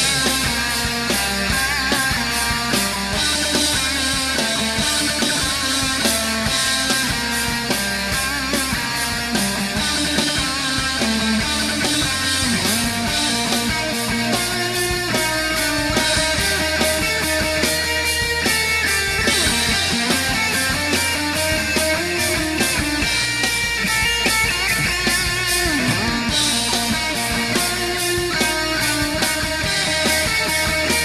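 Heavy rock band music: distorted electric guitar playing over bass and drums with a steady beat, the guitar sliding between notes.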